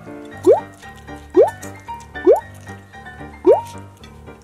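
Background music with a repeated cartoon 'bloop' sound effect: a quick rising pitch glide, four times, about once a second.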